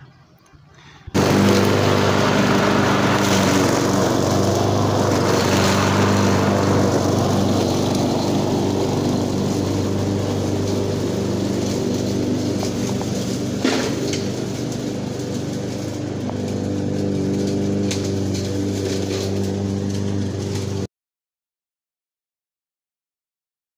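Gas-powered walk-behind lawn mower engine running steadily, starting about a second in and stopping abruptly near the end, with one brief sharp click partway through.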